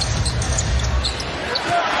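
Arena game sound from a basketball court: a basketball being dribbled on the hardwood floor under a steady murmur of the crowd.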